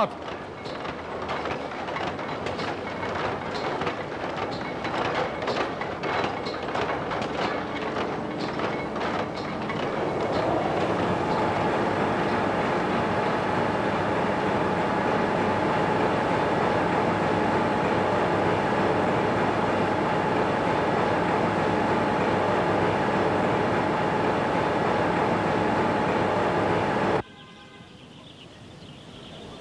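Textile mill machinery running, with yarn-winding frames clattering rapidly. About ten seconds in, the noise grows louder and steadier and a high, even whine joins it. The sound cuts off abruptly near the end.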